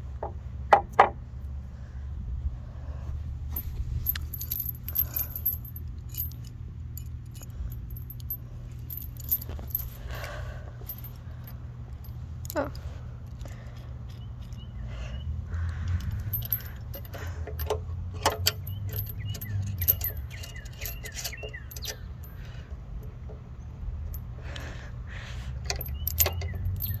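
Swing chain links and a steel screw-lock carabiner clinking and jangling as they are handled, in scattered metallic clicks throughout, over a steady low hum.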